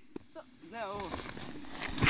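A distant voice calling out with a wavering, up-and-down pitch about a second in, over a faint steady hiss.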